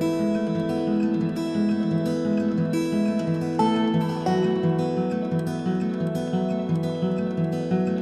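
Instrumental passage of a folk song: acoustic guitar picking a steady pattern of ringing notes, with no singing.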